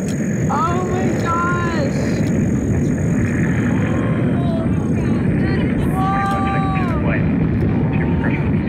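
Delta IV Heavy rocket launch heard by spectators: a low, steady roar from its three RS-68A first-stage engines that swells slightly at first. People whoop and shout over it a couple of times.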